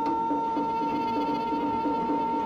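Music: a guitar strummed in a steady rhythm under one long, steady held high note.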